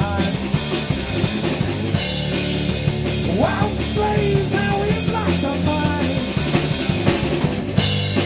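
Rock band playing live on electric guitar, bass guitar and drum kit, an instrumental stretch with no singing. A melody line bends and slides in pitch over the steady drums and bass.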